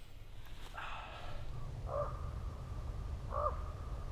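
A crow-family bird cawing: a first call about a second in, then two short caws about a second and a half apart, over a low steady rumble.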